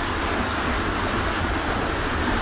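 Steady outdoor background rumble with no distinct events.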